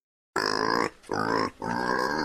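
A pig grunting three times in quick succession, each grunt about half a second long.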